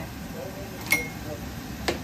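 A kitchen knife knocking twice on a cutting board as a potato is cut, about a second apart, the first knock with a brief ring.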